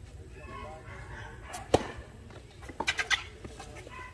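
Tennis racket strings striking the ball in a doubles rally: one sharp hit a little under two seconds in, then a quick run of hits and bounces about three seconds in.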